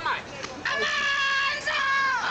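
A man's voice holding a long, high, drawn-out call at one steady pitch for about a second, then a second call that falls in pitch near the end.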